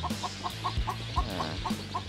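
A brooder full of day-old Dominant CZ pullet chicks peeping, short calls repeated several times a second, over background music.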